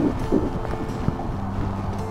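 Wind buffeting the microphone, with a steady low hum of several even tones setting in about half a second in.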